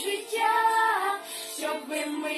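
A small group of girls singing a Ukrainian Christmas carol (koliadka) together in unison, unaccompanied, with held, gliding sung notes.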